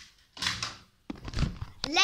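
Thuds, clicks and rustling of a phone camera being handled and picked up, and a child's voice starting near the end.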